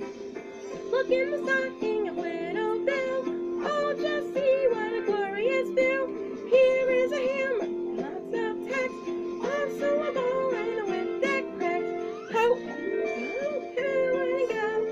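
A voice singing a Christmas song in melodic phrases over steady, held accompaniment chords.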